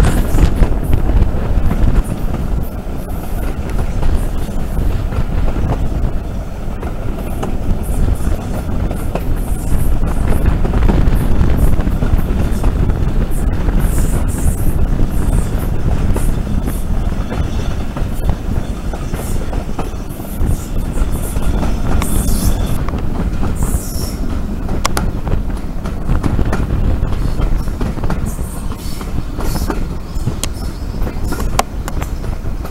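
Steam-hauled heritage passenger train heard from an open carriage window: a continuous loud rumble of the carriages' wheels on the rails, with a few brief high-pitched wheel squeals as the train rounds the curve in the second half.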